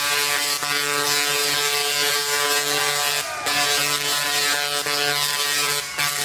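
Large Tesla coil throwing arcs: a loud, steady, harsh electric buzz with a hiss over it, briefly dipping a little past the middle.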